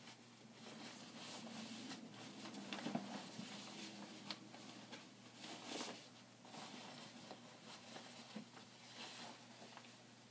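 Lined fabric jabot rustling faintly and irregularly as it is turned right side out and spread flat on a worktable, with a few soft ticks of handling.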